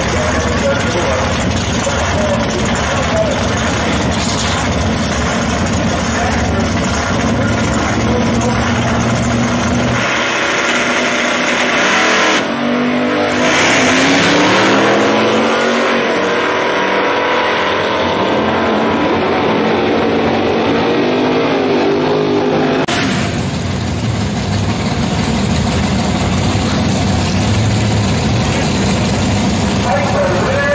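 Drag-racing engines run loudly at the starting line. About twelve seconds in, the pitch climbs and drops again several times for some ten seconds as a gasser and a Camaro make their pass down the strip. Near the end, loud engine noise returns as the next cars sit at the line.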